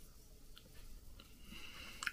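Very quiet chewing of food, with a couple of faint soft clicks.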